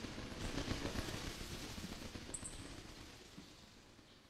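Theatre sound effect of a flock of birds flapping away: a dense rustle of wings that fades out over about three seconds, with a brief high double chirp about two seconds in.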